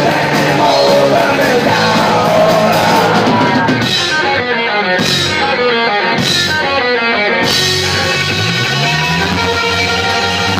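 Live punk rock band playing loud: electric guitars, bass and drum kit with vocals. About four seconds in, the cymbals drop away to a couple of single hits while the guitars keep up a repeated riff, and the full band crashes back in about three seconds later.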